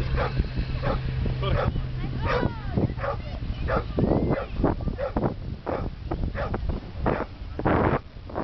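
Alaskan Malamute digging in sand, its front paws scraping in quick, uneven strokes about two or three a second, the biggest scrapes about four seconds in and near the end. Some short dog vocal sounds come in between the scrapes.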